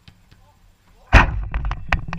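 A heavy impact on the metal goal frame that holds the camera, most likely the football struck against it: a loud bang about a second in, followed by a few rattling knocks as the frame shakes.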